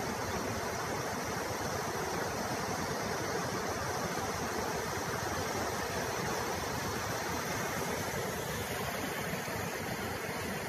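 Water rushing steadily out through the breach of a burst dam: an even, unbroken rush of noise with no separate events.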